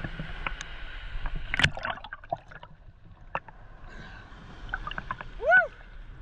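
Seawater sloshing and gurgling around a camera held at the surface in small surf, with scattered clicks and splashes against the housing. Near the end a brief pitched call, rising then falling, stands out above the water.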